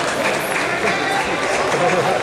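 Many voices talking and shouting over one another at once, a steady din of spectators and corner coaches around the mat.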